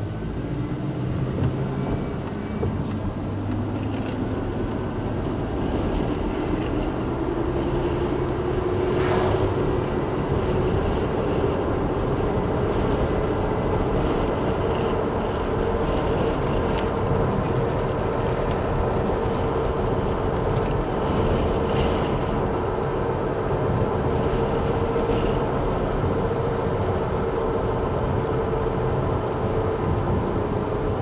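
Car engine and road noise heard from inside the moving car, the engine's pitch rising as it speeds up over the first several seconds, then holding steady while cruising.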